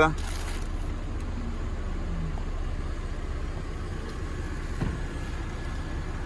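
Steady low rumble heard inside a car's cabin, with one soft bump about five seconds in.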